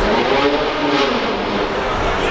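A car engine on a busy city street, its pitch rising and then falling in the first second as it accelerates past, then settling into a steady note over the traffic noise.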